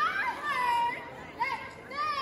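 High-pitched women's voices shouting drawn-out calls one after another, their pitch sliding up and down, in a large echoing hall.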